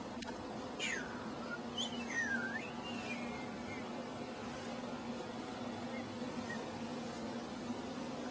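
Steady low hum of a hospital room, with a few brief high squeaks that slide in pitch about one to three seconds in.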